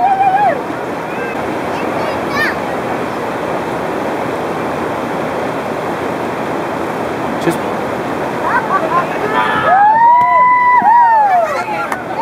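Steady rushing of river water, then, about ten seconds in, several voices whooping with rising-and-falling 'woo' calls.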